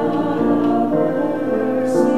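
Voices singing a hymn, held sung notes moving from pitch to pitch, with a sung 's' consonant near the end.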